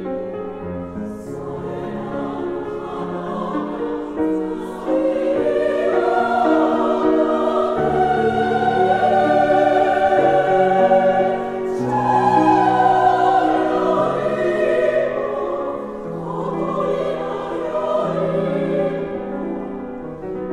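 Women's choir singing in Japanese with piano accompaniment: long held chords over stepping bass notes, swelling louder about five seconds in and again around twelve seconds, then easing back.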